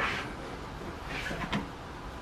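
Bench vise being tightened on a PVC pipe by turning its handle: a sliding clunk right at the start that fades, then a few fainter short metal rubbing sounds a little past the middle.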